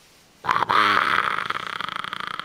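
Infant making a long, raspy vocalization that starts about half a second in and breaks into a rapid buzzing rattle toward the end.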